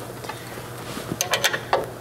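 Hand ratchet wrench clicking several times in quick succession a little past halfway, as a suspension bolt is snugged tight, over a faint steady hum.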